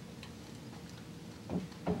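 Faint ticks and rustles of heavy-duty aluminium foil being pressed and smoothed by hand around a phonograph's mandrel, with two soft knocks near the end.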